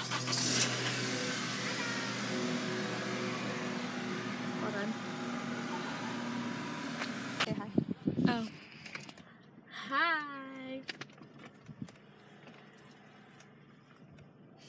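Steady outdoor car and street noise beside a parked car, with faint voices. After a sudden cut it drops to a quiet car cabin, with one short vocal sound about two seconds later.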